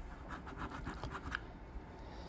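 A coin scratching the coating off a lottery scratch-off ticket: a quick run of short scratching strokes lasting about a second.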